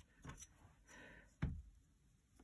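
A metal ruler moved over paper and set down, with a few light taps, a brief soft scrape about a second in, and one firmer knock about one and a half seconds in.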